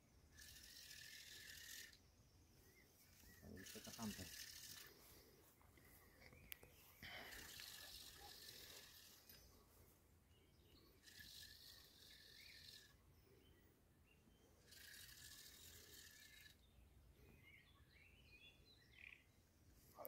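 Near silence: faint outdoor ambience, with soft hissing sounds that come and go every few seconds.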